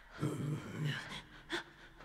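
Inuit-style throat singing by one man: a low, throaty voiced stretch, then short, sharp, breathy gasps in a quick rhythm.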